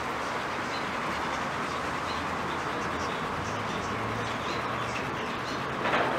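Steady rushing background noise with a low hum underneath, even in level and without distinct events.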